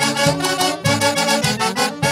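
Andean orquesta típica playing a huaylarsh live: saxophones carry the melody over timbales, cymbal, harp and violin, with a steady beat.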